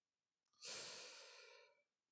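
A person's single sigh, breathed out close to the microphone, lasting about a second and fading away.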